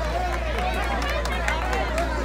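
Overlapping voices of a boxing crowd talking and calling out, over a steady low hum.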